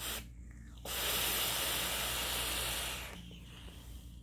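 A drag on a box-mod e-cigarette: a steady breathy hiss of air and vapor lasting about two seconds, with a faint thin whistle in it.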